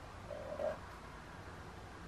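Quiet room tone in a pause, with a brief faint hum about half a second in.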